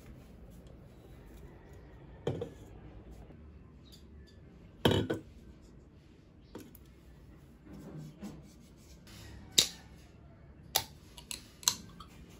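Slim aluminium drink can handled and knocked down on a desk about five seconds in, then its ring-pull tab picked at and levered up with a few sharp clicks near the end as the can is cracked open.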